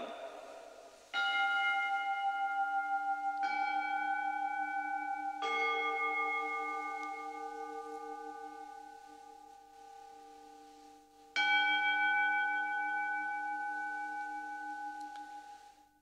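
Altar bells rung at the elevation of the chalice after the consecration. They are struck four times: three strikes about two seconds apart, then a fourth after a longer pause. Each strike is a long ringing tone that slowly fades, and the pitch differs slightly from strike to strike.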